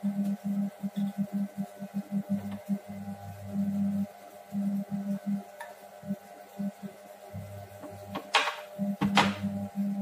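Monsieur Cuisine Connect food processor running at speed 3, mixing cake batter: a steady motor hum with a low throb that comes and goes unevenly. Near the end there are two short scrapes, from a silicone spatula against a glass bowl.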